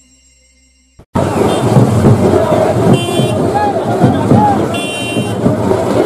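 Faint intro music fades out, and about a second in a loud street crowd cuts in: many people shouting and talking over each other. Two short, high vehicle-horn toots sound over the crowd, about two seconds apart.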